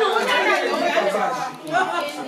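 Several people talking over one another in a room, an indistinct mix of men's and women's voices.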